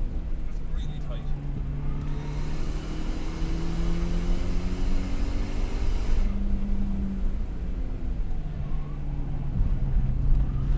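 Car engine and road noise heard from inside the cabin while driving a race circuit at speed. The engine note drops and climbs several times as the car goes through bends, and a louder rush of road and wind noise builds in the middle.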